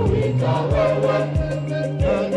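Women's church choir singing over held low instrumental tones and a steady low beat that falls about every two-thirds of a second.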